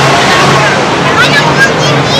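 Crowded-beach ambience: a steady, loud rush of wind and surf noise on a camcorder microphone, with high-pitched voices of people calling out, thicker from about a second in.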